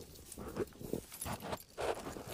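Light rustling and a few soft, irregular knocks as a hand reaches in among garden plants with a small folding pocket tool.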